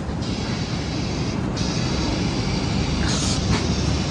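Passenger train heard from its open doorway: a steady low rumble and hiss, growing slightly louder, with a brief burst of hiss about three seconds in.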